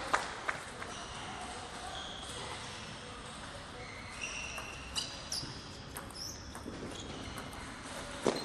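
Sharp ticks of a table tennis ball struck by rackets and bouncing on the table, a few near the start and more about five to seven seconds in, with high squeaks of shoes on the court floor in between.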